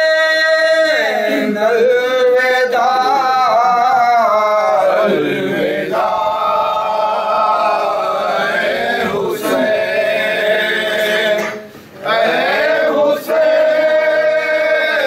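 Unaccompanied noha, a Shia lament, chanted by male voices with several men singing together. There is a brief break about twelve seconds in before the chant resumes.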